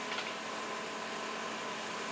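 Steady background noise of sawmill machinery running: an even hiss with a faint steady whine, no distinct cutting strokes.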